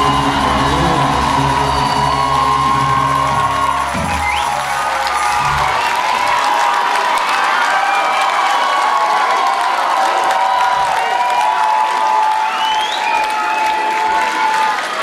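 A live rock band plays the last seconds of a song. The music stops about four to six seconds in, and a concert crowd cheers, whoops and claps.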